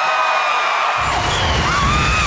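A long, high held yell, then about a second in the game show's music sting comes in with drum hits and a cymbal crash, over audience cheering.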